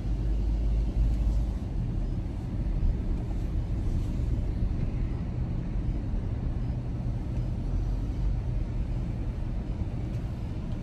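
Low, steady rumble of a car heard from inside its cabin as it rolls slowly forward, strongest in the first couple of seconds.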